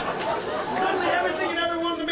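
Live audience laughter and chatter tapering off, giving way to a man speaking in the second half.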